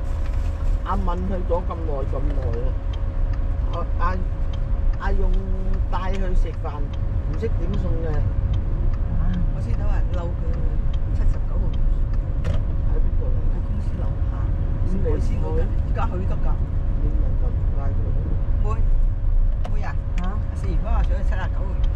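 A car's cabin while driving in city traffic: a steady low road-and-engine rumble with a faint constant hum, and people talking quietly over it.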